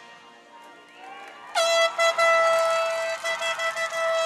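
An air horn sounds a long, loud, steady blast, starting abruptly about a second and a half in, over faint music.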